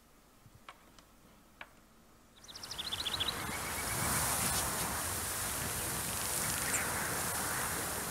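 A few faint clicks over near quiet, then a film soundtrack's open-meadow ambience fades in about two and a half seconds in: a steady airy hiss with a quick run of high chirps as it starts.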